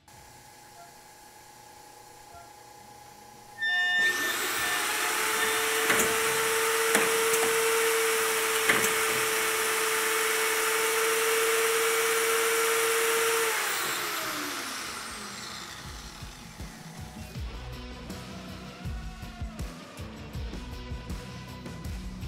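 SCMI Olympic K201 edgebander's motors starting suddenly and running with a steady whine for about ten seconds, then spinning down with a falling pitch.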